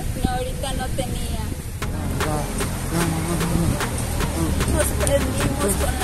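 Indistinct talking over a steady low rumble, with scattered short clicks from about two seconds in.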